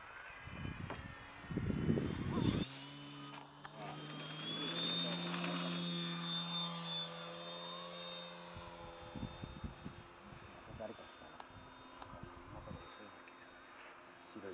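Radio-controlled model airplane flying overhead: its motor and propeller give a steady drone with a high whine. The drone starts about three seconds in, holds for several seconds, then fades as the plane flies off. Before it come a couple of seconds of low rumbling noise, wind on the microphone.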